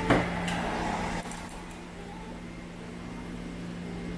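A steady low mechanical hum, with a single sharp knock just after the start; the surrounding noise quietens about a second in.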